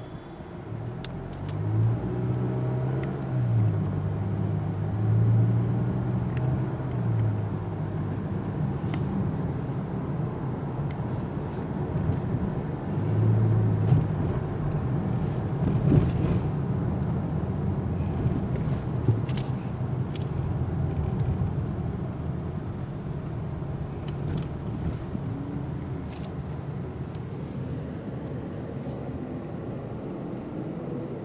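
Car driving, heard from inside the cabin: steady engine and road rumble. The engine note rises and drops in steps as the car pulls away during the first several seconds, and again about thirteen seconds in.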